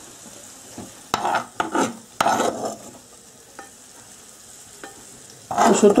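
Metal spoon stirring and scraping fried potatoes in a non-stick frying pan, with a few strong strokes in the first half and light clicks later. A faint sizzle from the hot pan runs underneath.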